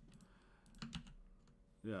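A few faint, sharp clicks over a low room hum, then a man says a quiet "yeah" near the end.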